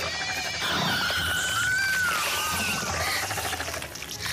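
High-pitched squealing shrieks of small creatures, several overlapping cries that glide up and down over a low rumble, dying away about three seconds in. In the film these are the fairies shrieking as the Pale Man seizes and eats them.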